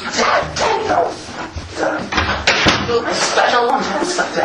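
Loud, excited voices making wordless vocal sounds, with a sharp knock or bang about two and a half seconds in.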